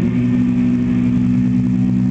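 Ibanez electric guitar through an amplifier, a final chord held and ringing out steadily at the end of a jam.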